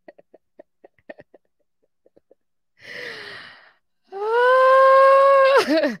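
A woman laughing and vocalising: faint clicks for the first second or so, a breathy gasp about three seconds in, then a loud, long held cry that drops in pitch near the end.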